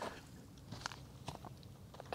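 Faint footsteps on a dry, leaf-strewn dirt trail, with a few light crunches.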